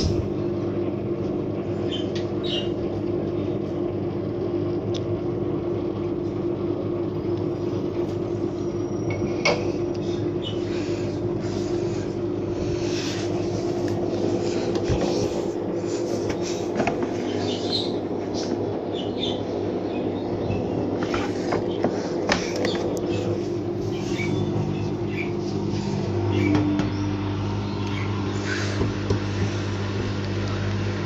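Front-loading washing machine in its wash phase: the drum motor hums steadily while sudsy water and laundry slosh inside, with scattered small splashes and clicks. Near the end the motor's hum drops lower and grows stronger as the drum changes its turning.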